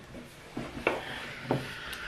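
Handling sounds at a wooden table: a pen rubbing on paper and two sharp knocks, about one and one and a half seconds in.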